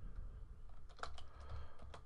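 Quiet typing on a computer keyboard: several irregularly spaced keystrokes.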